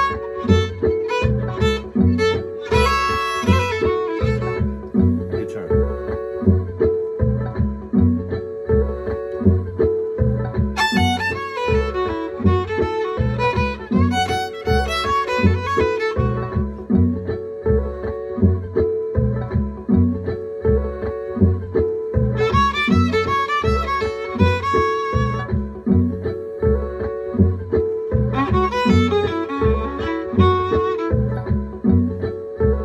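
Violin playing short blues phrases over a backing groove with a steady beat. The fiddle comes in bursts of a few seconds with gaps of groove between them, trading phrases with the player who is meant to answer.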